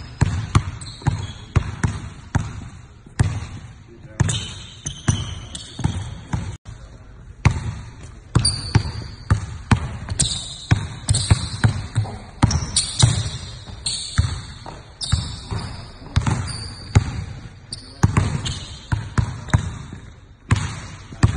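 A basketball dribbled on a hardwood gym floor: uneven runs of quick, sharp bounces, with short high-pitched squeaks between them.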